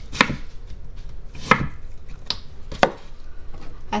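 Chef's knife cutting a peeled English cucumber into sticks on a wooden cutting board: four sharp knife strikes against the board at uneven intervals.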